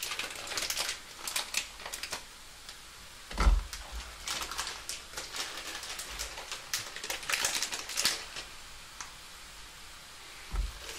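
Sugary water boiling in a pan, crackling and popping with irregular clicks. A soft thump about three and a half seconds in as a handful of gummy bears drops into the water.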